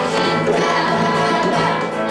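A small band playing a song, with electric guitar, electric bass and bongos, and a group singing along.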